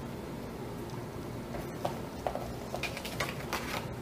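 Light clicks and taps from a paper trimmer and kraft cardstock being handled during a cut, coming as a quick, irregular run of about eight in the second half, over a low steady hum.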